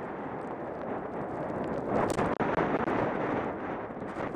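Wind rushing over the microphone while skiing downhill, mixed with the hiss of skis sliding over snow; it swells about halfway through.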